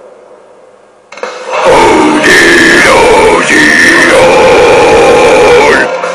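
A heavily distorted harsh metal scream, held as two long, very loud notes with a short break between them, starting about a second and a half in.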